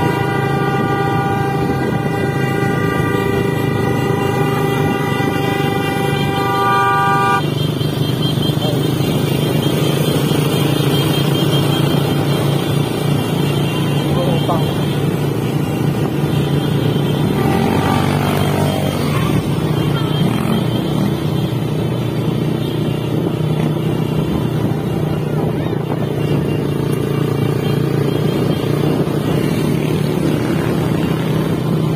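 A vehicle horn held in one long steady blast that cuts off abruptly about seven seconds in, over a motorcycle engine running steadily at road speed with wind rush.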